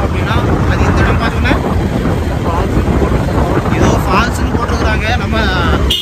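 Wind buffeting the microphone of a phone held out on a moving motorcycle, a loud, steady low rumble with road and engine noise underneath, and a voice breaking through now and then.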